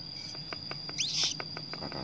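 A bird gives a short rising chirp about a second in, over a steady high-pitched tone. A run of faint light clicks comes in the second half.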